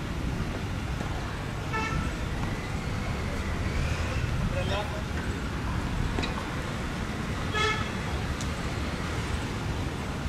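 Steady road-traffic noise with a vehicle horn tooting briefly twice, about two seconds in and again near eight seconds.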